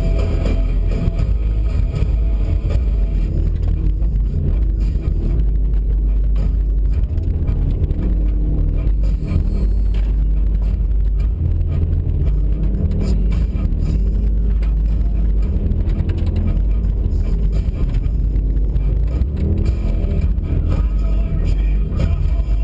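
Subaru WRX engine running under load, heard from inside the cabin as the car is driven on snow, with a music track playing over it.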